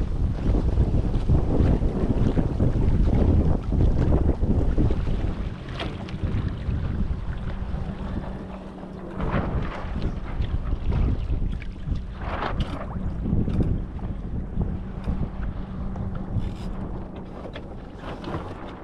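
Wind buffeting the microphone while sailing, heaviest for the first five or so seconds, with water washing and splashing along a small sailboat's hull.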